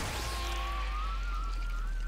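Cartoon sound effect of a spinning energy disc slicing through: a thin whine rising slowly in pitch over a deep, steady rumble and a light hiss.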